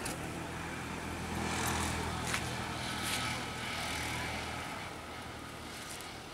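A steady low engine hum, like a motor vehicle running nearby, that stops suddenly a little before the end.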